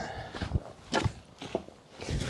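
Footsteps of a person walking across garden soil and a path, about two steps a second.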